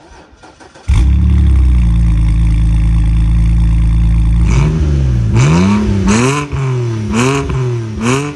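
BMW 125i E82's naturally aspirated 3.0-litre N52B30 straight-six starting about a second in, heard at the exhaust. It settles into a steady fast idle, then is revved in several short blips in the second half.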